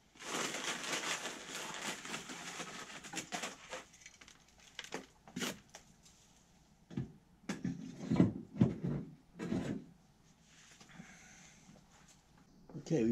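Dry wood chips rustling and pouring from a bag into an electric smoker's chip loader for about four seconds, followed by several separate knocks and clunks as the loader and smoker are handled.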